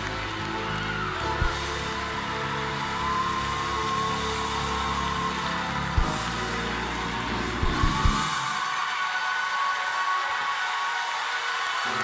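Church band music: sustained held chords with a few soft drum hits. The low notes drop out about eight seconds in, leaving only higher held tones.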